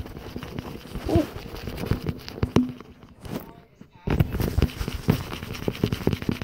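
Handling noise from a phone camera being gripped and knocked about: a run of clicks, knocks and rubbing. The noise drops almost to quiet for about a second past the middle, then the knocking starts again.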